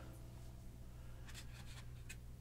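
Quiet room tone with a steady low hum, and a couple of faint light clicks in the second half.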